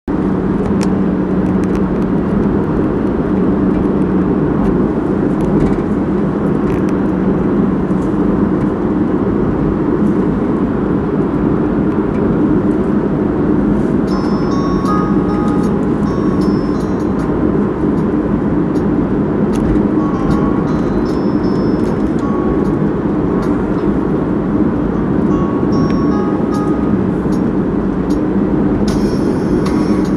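Steady engine and road noise inside a moving van's cabin. From about halfway through, scattered short music notes come in over it.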